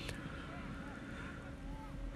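Faint outdoor football-pitch ambience: distant players' voices calling over a low steady background noise.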